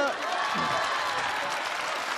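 Studio audience applauding, a steady even clapping that sets in right at the start and holds throughout.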